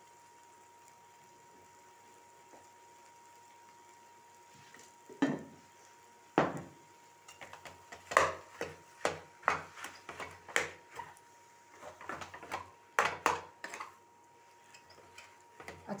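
Spatula knocking and scraping against a nonstick pan as boiled potatoes are stirred and mashed with salt. After a quiet start, sharp irregular knocks come about two a second, then ease off near the end.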